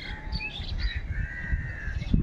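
Birds chirping: a few short chirps in the first second, then one longer whistled note lasting about a second, over a low rumble.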